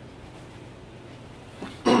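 Quiet room tone with a faint low hum, then a short spoken phrase near the end.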